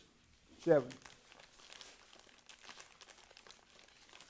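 Paper pages rustling and turning, a faint irregular crinkling for about three seconds, as a Bible passage is looked up.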